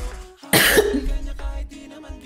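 A single loud, sharp cough about half a second in, rising suddenly and fading over about a second, heard over upbeat pop music playing underneath.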